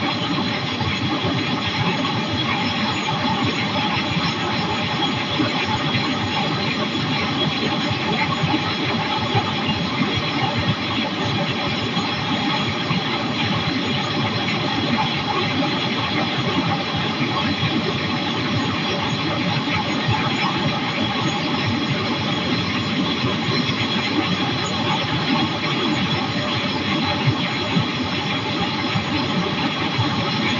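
Flexwing microlight trike's engine and pusher propeller running steadily in cruise flight, with wind noise over the microphone.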